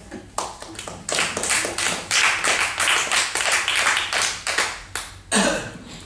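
A small audience applauding: a few scattered claps that swell into steady applause about a second in and die away near the end.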